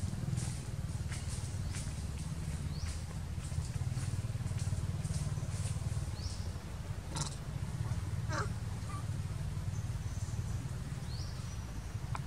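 Outdoor ambience: a steady low rumble like distant engine traffic, with short high rising chirps every few seconds and a couple of brief squeaks about seven and eight and a half seconds in.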